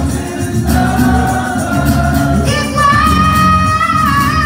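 Live acoustic rock performance: a male singer backed by a strummed acoustic guitar, his voice holding one long note over the last second and a half.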